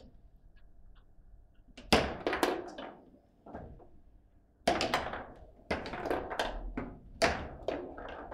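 A foosball table in play: a run of sharp knocks as the ball is struck by the plastic figures and bangs against the table and rods. There is a quick cluster about two seconds in, then a longer run of knocks from about halfway to near the end.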